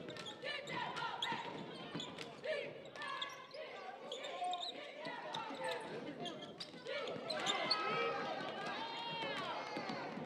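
A basketball bouncing on a hardwood gym floor, in repeated sharp thuds, mixed with indistinct shouting voices in a large, echoing gymnasium.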